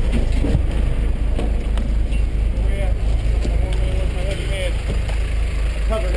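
SWAT vehicle's engine running with a steady low rumble while officers climb out over its steps, with a few short knocks of boots and gear.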